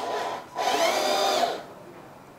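Small electric drive motor and gearbox of a 1/10 scale RC off-road truck whining as the wheels are run with the differentials locked: a short, quieter whir, then a louder steady whine for about a second.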